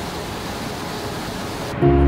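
Steady rush of the Lower Falls of the Yellowstone River pouring over its brink, an even noise with no pitch. Near the end the water sound cuts off and music with a deep bass note starts.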